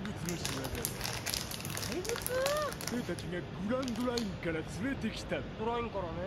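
Anime dialogue from the episode's soundtrack, characters talking at a lower level than the reactor's voice, with scattered faint clicks in the first half.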